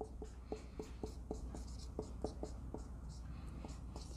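Marker pen squeaking on a whiteboard as a word is written, in quick short strokes about four a second that stop shortly before the end.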